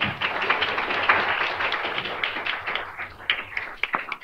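Audience applauding, dense at first and thinning near the end into a few scattered separate claps.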